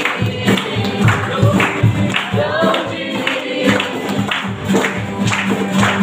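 Live worship song: voices singing over strummed acoustic guitars, with a cajon keeping a steady beat of about two strokes a second.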